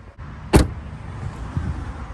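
Car door of a 2021 Jeep Grand Cherokee L being shut: one solid slam about half a second in, then steady outdoor background noise.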